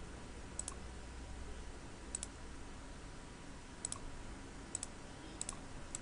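Faint computer mouse clicks, about six spread unevenly, each a quick double tick of the button being pressed and released while edges are picked in the CAD program.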